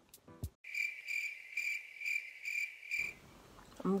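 Cricket-chirping sound effect: a steady high chirp pulsing about six times over two and a half seconds, laid over a muted soundtrack, the stock 'crickets' gag for nothing happening.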